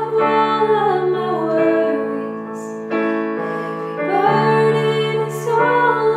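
Women singing a slow worship song with long held notes, accompanied by chords on a Yamaha digital piano.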